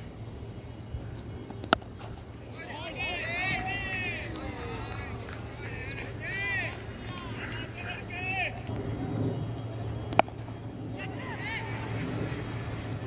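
Cricket players shouting high-pitched calls and encouragement across the field in several short bursts. A sharp knock comes about two seconds in, and a louder crack of bat striking ball about ten seconds in.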